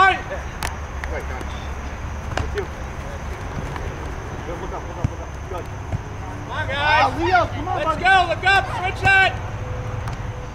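High-pitched shouts from young players calling out on a soccer field, several short calls in the second half, over a low steady rumble.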